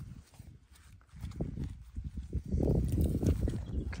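Low, irregular rumbling and thudding: wind buffeting the microphone mixed with footsteps on grass. It is nearly quiet for the first second, then picks up and carries on.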